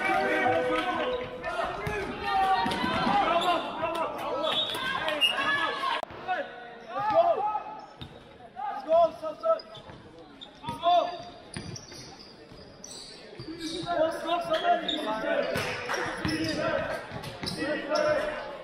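Basketball bouncing on a sports-hall court during play, with players' shouts and calls, all ringing in a large hall.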